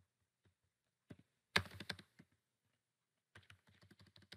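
Computer keyboard keystrokes: a few isolated clicks about a second in, a louder quick flurry of keys around a second and a half, then a run of fast, light key taps near the end.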